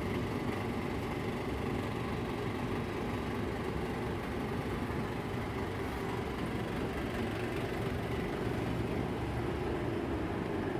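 Steady low rumbling background noise of a large supermarket hall, with no distinct events.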